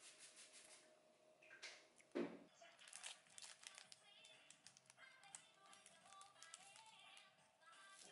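Near silence, with faint background music and faint crinkling and clicking of a plastic snack wrapper being handled. One brief louder sound comes about two seconds in.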